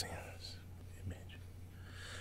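A quiet pause in talk: steady low hum with faint, soft voice sounds, close to a whisper.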